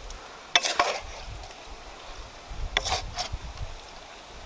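Shrimp and shredded green vegetables being tossed and stirred in a stone bowl: a utensil clicks and scrapes against the bowl in two short clusters, about half a second in and again near three seconds in.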